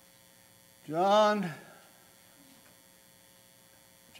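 Steady electrical mains hum from the sound system. About a second in, a man makes one short drawn-out vocal sound of about half a second.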